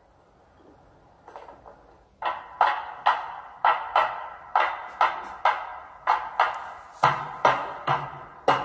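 Opening of a recorded candombe song: after a near-silent start, drum strikes set in about two seconds in, a regular beat of about two or three hits a second, with a deeper bass part joining near the end.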